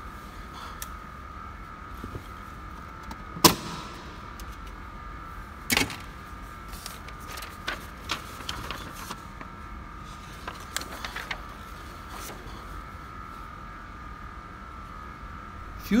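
Plastic dashboard end cover over a Saab 9-3's instrument-panel fuse box being unclipped and pulled off: a sharp snap about three and a half seconds in, a second about two seconds later, then lighter plastic clicks and rattles as the panel comes free.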